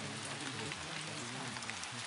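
Steady rain-sound recording with scattered drop ticks. Under it is a faint, buried voice that bends in pitch, as in masked subliminal affirmations.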